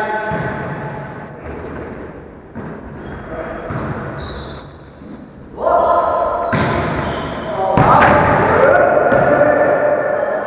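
A volleyball being struck in an echoing gym hall, sharp knocks every second or so, with players calling out; the voices get loud from a little past halfway and stay loud.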